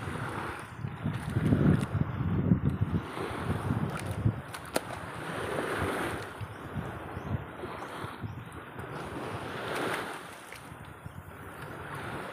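Wind buffeting the microphone in uneven gusts, with choppy water sloshing against the hull and outrigger of a wooden outrigger boat and a few light knocks.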